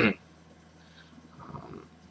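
A man clearing his throat in one short, rough burst right at the start, then a faint low murmur about a second and a half in, over a steady low electrical hum.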